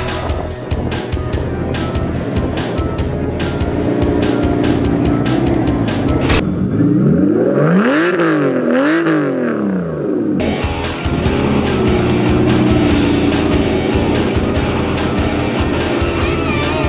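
Background music with a steady beat, broken for about four seconds in the middle by a 2003 Aston Martin Vanquish's 6.0-litre V12 being revved twice, its pitch climbing, dipping, climbing again and falling back.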